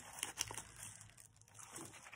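Faint crinkling and rustling of paper craft embellishments and binder pages being handled, with a few light clicks in the first half second.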